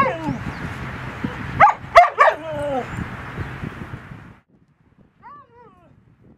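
Dogs yelping and whining in short calls that bend up and down in pitch: one at the start, a quick run of three about two seconds in, and a faint one near the end. A steady hiss lies under the calls and cuts off suddenly about four seconds in.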